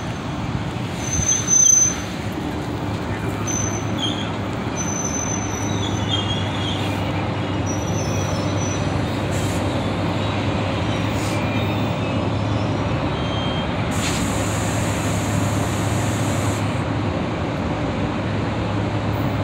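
Steady low engine rumble that grows a little louder from about six seconds in, with faint high chirps over it in the first half. A brief louder sound comes about a second and a half in.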